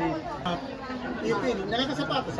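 Chatter of several people talking at once, with voices overlapping.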